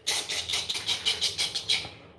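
Close scratchy rustling with a hiss, in quick uneven pulses, stopping just before the end.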